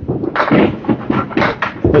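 Candlepin bowling: a run of sharp clattering crashes of balls and pins, several in quick succession from about half a second in.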